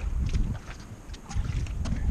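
Low rumbling thumps: wind buffeting the microphone, with footsteps on the wooden dock boards right by the camera.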